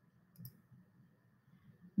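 A single quick computer mouse click, a short sharp double tick of press and release about half a second in.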